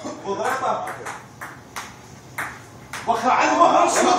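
Table tennis rally: the ping-pong ball clicking off the bats and the table about three times a second, with men's voices over it early on and near the end.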